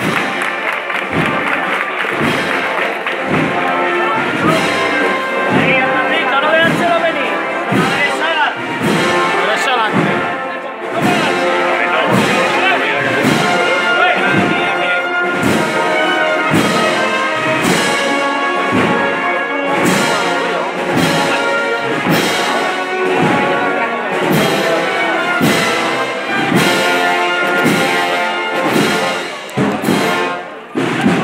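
Spanish brass-and-wind band playing a processional march, trumpets and trombones over a steady bass-drum beat.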